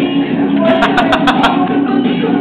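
Latin-style music with guitar and singing, steady and loud. Just after halfway there is a quick, even run of about six sharp claps or clicks.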